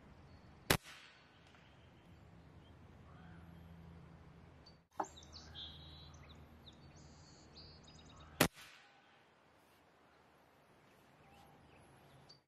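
Three shots from a sub-500 fps .22 Reximex Throne Gen2 PCP air rifle, each a single sharp crack with a quick decay, about four seconds apart; its shroud has the integral sound suppression removed. Faint bird calls between the shots.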